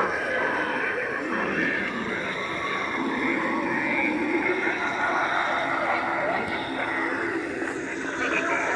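Indistinct voices with no clear words, steady throughout.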